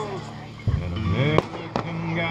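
Fireworks exploding overhead: two sharp bangs about a third of a second apart in the second half, in a short gap in the music.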